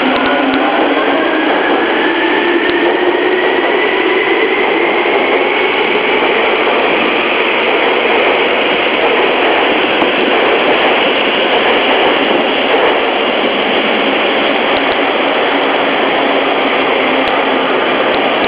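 Tokyu 8500 series electric train pulling out of an underground station, passing close by with loud, steady running noise. A whine rises slowly in pitch over the first several seconds as it gathers speed.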